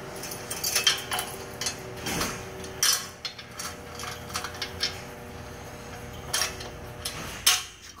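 Irregular metal clanks and clicks of steel hitch parts, pins and latch being handled by hand while a snow blade is latched onto a compact tractor's front mount, with the engine off. About half a dozen sharp knocks, the loudest near the end.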